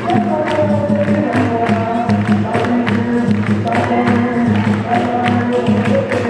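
Capoeira roda music: many voices singing together over percussion, with steady rhythmic hand-clapping from the ring.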